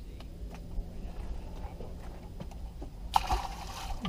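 Water slapping and sloshing against a small fishing boat with a low steady rumble and a few light knocks of gear, then a short loud rush of noise starting sharply about three seconds in and lasting under a second.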